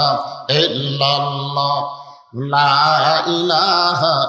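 A man chanting zikr into a microphone in long, drawn-out, melodic phrases: two held phrases of about two seconds each, with a short break near the middle.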